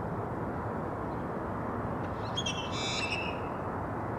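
A bird gives one short, high call of about a second, a little past halfway through, over a steady low background rumble.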